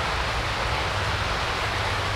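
Steady rushing outdoor noise with no distinct events, starting abruptly and holding level throughout.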